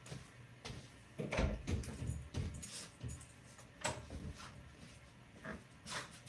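Scattered light knocks and clicks with a few soft thumps about one and a half to two and a half seconds in: footsteps and a small dog moving about on a wooden floor.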